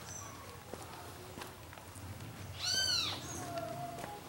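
A single animal call about two-thirds of the way in, clear and pitched, rising and then falling over about half a second. A lower, shorter call follows, and faint high chirps sound around it.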